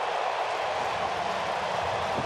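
Ballpark crowd cheering a home run, an even, steady roar with no let-up.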